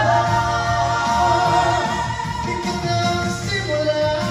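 Three voices, a woman and two men, singing a ballad together in harmony through handheld microphones, holding long sustained notes with instrumental music underneath. By the end only one of the men is still singing.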